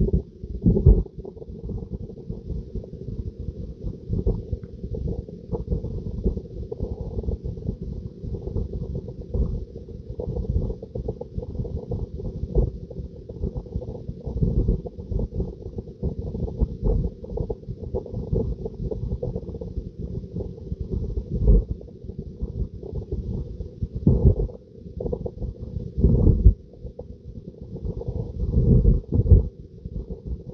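Tesla Model 3's cabin climate fan running on auto, its airflow heard as an uneven, fluttering low rumble.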